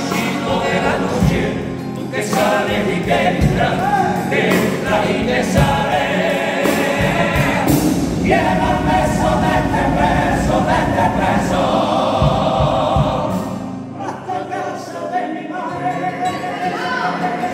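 A male comparsa choir sings in harmony with Spanish guitars, over a steady beat of low knocks. The voices thin out briefly near the end, then come back.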